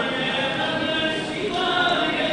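Many voices chanting together in held, sung tones over a crowd's hubbub, as during a temple abhishekam.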